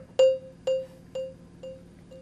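Delayed repeats of a single marimba note through a delay plugin with its filter cutoff fully open. About every half second a new echo sounds, each one quieter but just as bright as the original.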